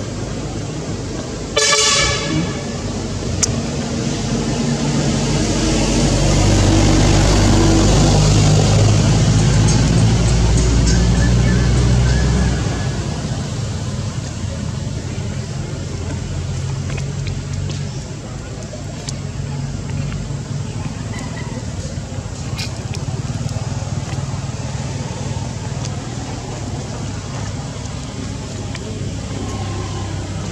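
A vehicle horn toots once, briefly, about two seconds in. A motor vehicle's engine then runs close by as a low, steady sound, loudest from about six to twelve seconds, and drops away suddenly just after twelve seconds, leaving steady background traffic noise.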